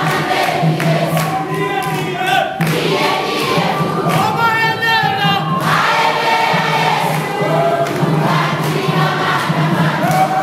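A church congregation singing a praise and worship song together, many voices at once, loud and unbroken.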